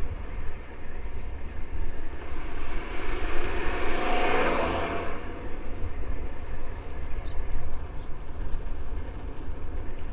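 Steady wind rumble on the microphone of a bicycle-mounted camera while riding. A vehicle passes close by about four seconds in, swelling up and fading away within about two seconds.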